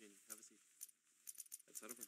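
Faint clinking clicks of casino-chip sounds from an online blackjack table as bets are placed, about eight or nine in two seconds, coming faster after about a second. A faint murmured voice sits under them.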